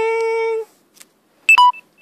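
A person's voice holds one steady hummed note, then about one and a half seconds in an electronic two-tone beep sounds: a short high note dropping to a lower one, which starts again right at the end.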